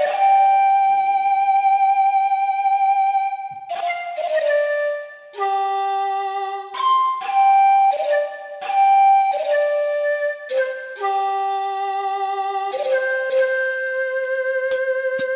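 Instrumental intro of a karaoke backing track, with no voice yet. A single lead melody plays one long held note with vibrato for almost four seconds, then moves through a run of shorter held notes over soft accompaniment.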